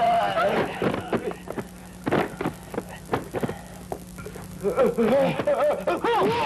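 Kung fu film fight sound effects: a quick run of sharp punch and hit impacts, then a man's wordless cry near the end.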